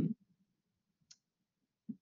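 Near silence in a pause between spoken phrases, broken by a single faint, short click about a second in.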